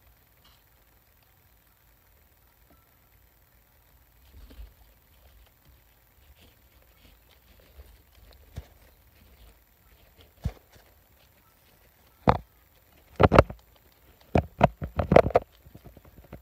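Guinea pigs nibbling and bumping the phone that is recording them, heard as sharp knocks and scrapes right at the microphone. After a few faint rustles these start about ten seconds in and come thick and loud near the end.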